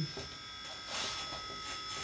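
A faint, steady electrical buzz made of several thin high tones over quiet room tone, in a pause between speech.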